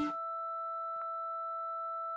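A single steady pure tone held at an even level as the band's last chord cuts off at the start, with one faint click about a second in.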